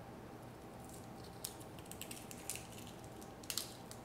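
Faint scrapes and light clicks of a metal spoon scooping a halved hard-boiled egg out of its shell, with a slightly sharper click about three and a half seconds in.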